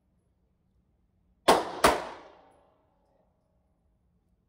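Two shots from an antique Belgian Bulldog revolver in .320 Revolver (.32 Short Colt), fired in quick succession about a third of a second apart, each followed by a short echo off the walls of an indoor range.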